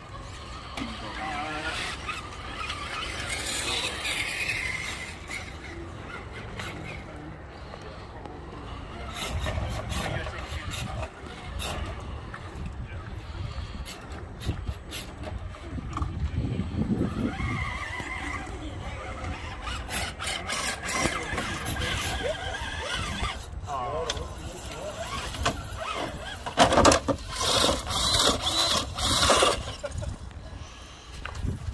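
Radio-controlled scale rock crawler with a brushed electric motor, whining in short bursts as it climbs loose rock, with tires and chassis scraping on stone. Near the end comes a run of loud knocks and clatter as the crawler tips over onto its roof.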